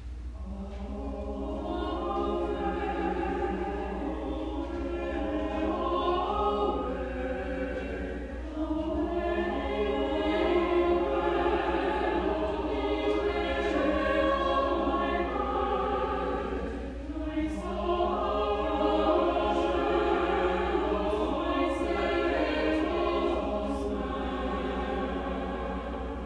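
Church choir singing in sustained phrases, with short breaks about 8 and 17 seconds in.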